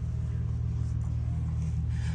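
An engine idling: a steady low rumble that holds an even level throughout.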